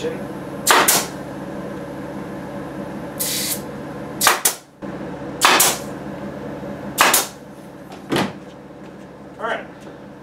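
Pneumatic nail gun firing four sharp shots, spaced a second or more apart, as it nails a pine frame in place. There is a short hiss between the first two shots, a fainter knock near the end, and a steady hum underneath.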